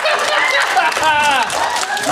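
A small audience laughing, with a few scattered claps.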